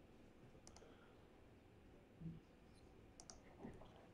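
Near silence with a few faint clicks from a laptop being worked: one click just under a second in, and a quick pair of clicks near the three-second mark.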